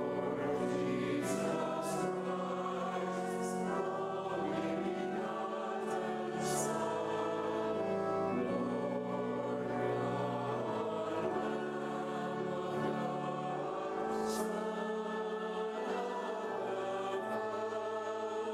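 Choir singing a sung part of the Catholic Mass in slow, sustained chords, with a few crisp 's' consonants standing out, in a reverberant cathedral.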